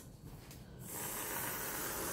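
Aerosol can of spray whipped cream hissing as a stripe is squirted onto a pie, starting about a second in and running steadily; the stream comes out weak.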